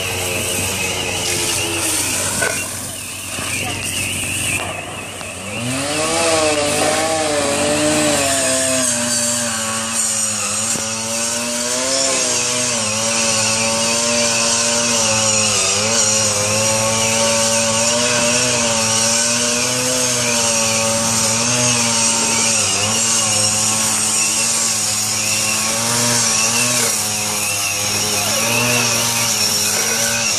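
A two-stroke chainsaw revs up about five seconds in and then runs at high speed, its pitch wavering and dipping briefly as it bites. It is cutting through the roof of a burning garage, the usual way firefighters vent a roof.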